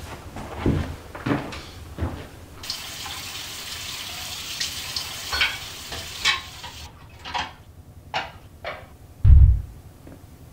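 Kitchen tap running into a sink for about four seconds with a few clinks of dishes, then shut off abruptly. Several light knocks follow, and a loud low thud comes near the end.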